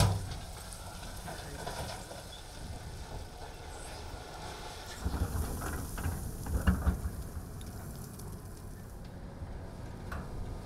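Low, steady rumble of heavy diesel earth-moving machinery (a dump truck and wheel loader) working, with stronger uneven rumbling between about five and seven seconds in.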